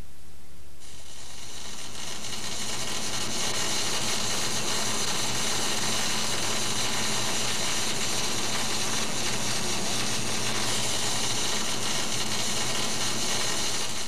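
A steady, loud hiss that starts about a second in and holds.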